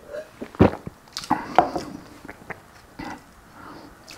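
Close-miked drinking and eating sounds: a swallow of milk, a sharp knock about half a second in as the glass is set down on the wooden board, then wet mouth clicks and smacks.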